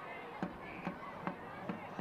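Pitch-side sound of a football match in play: faint distant voices of players and crowd, with a few soft knocks of the ball being kicked about every half second.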